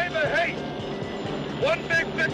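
Voices shouting and yelling, once at the start and again near the end, over film score music.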